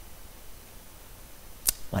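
Quiet room hiss with a single sharp click near the end.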